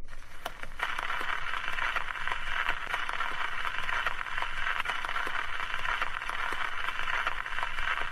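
Surface noise of an old gramophone record turning under the needle: a steady hiss with scattered crackles and clicks.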